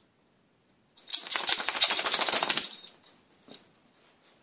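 A dog shaking itself off, its collar and tags rattling rapidly for about two seconds, then one faint clink near the end.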